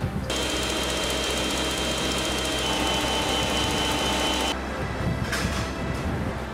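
Electric stand mixer running with its wire whisk attachment, a steady motor whine with a fixed pitch. It cuts off suddenly about four and a half seconds in.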